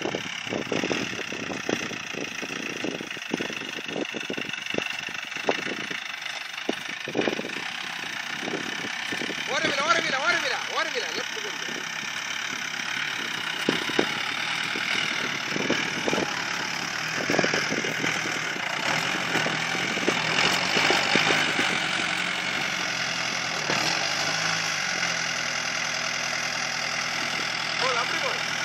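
Customized Jeep's engine running as the 4x4 crawls over rough dirt and climbs a steep slope, with a steady engine note in the second half and scattered knocks and thumps in the first. Voices talk in the background.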